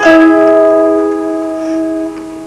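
Kanklės, the Lithuanian plucked zither, closing a tune with one strongly plucked chord that rings on and slowly dies away.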